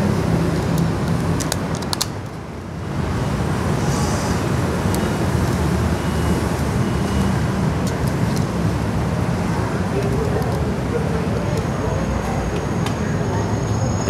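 Steady, loud background rumble and hiss with a brief lull about two seconds in, overlaid by a few faint clicks of small plastic card parts being handled.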